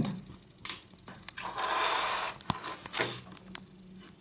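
Hands handling small parts on a wooden tabletop: a few light clicks, then a rustling scrape lasting about a second and a half, ending in a short sharper hiss.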